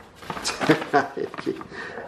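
Handling noise: a run of short clicks and rustles, with a few faint mumbled syllables.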